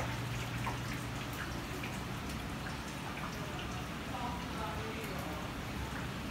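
Steady background noise with faint voices of people talking.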